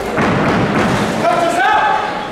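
Several people's voices echoing in a large hall, getting louder just after the start, with one raised voice drawn out near the end.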